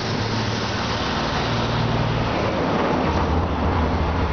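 Steady low motor drone under a broad rushing hiss, like outdoor traffic or engine noise; the drone drops a little lower about three seconds in.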